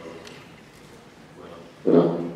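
Low room tone in a hall, then near the end a short, loud voiced sound from a man, amplified through the hall's microphone.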